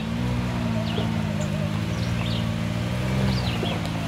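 Side-by-side UTV engine running at low, steady revs as it crawls over rock ledges, the pitch lifting slightly about three seconds in.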